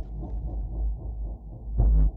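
Low, muffled heartbeat-like pulse in a film trailer's sound design: one deep thump at the very start and another near the end, about two seconds apart, over a dull low rumble.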